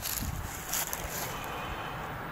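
Steady, fairly quiet wind noise on the microphone, with a couple of faint rustles in the first second.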